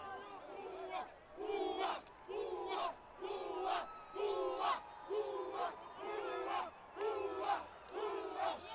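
A group of men chanting together in a huddle, one short shouted phrase repeated in unison about once a second.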